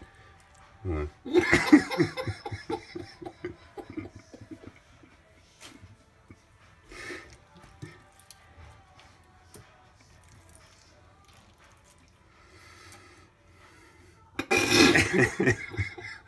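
A person's laughter and talk near the start and a burst of speech near the end, with quiet clicks and wet handling sounds in between from hands working inside a gutted fish's belly in a metal sink.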